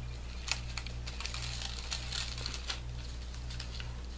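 Small seed beads clicking lightly against paper and card as fingers press them into hot glue, a few scattered soft ticks over a steady low hum.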